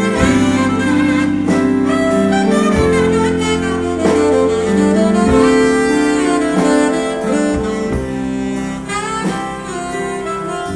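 A live band plays a slow instrumental passage of a song: held melody notes over bass, with a slow beat about every second and a quarter.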